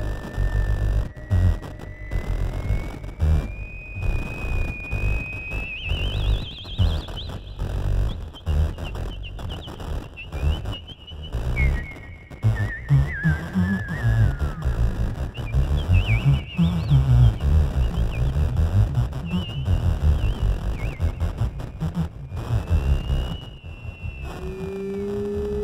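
Theremin playing a high, sliding melody with wide vibrato: it climbs slowly over the first several seconds, drops and glides down around the middle, then wavers on high notes near the end. Underneath runs a busy, uneven low backing.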